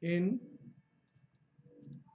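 Faint clicks and taps of a pen stylus on a writing tablet while handwriting, a couple of light ticks about halfway and near the end, after one short spoken word.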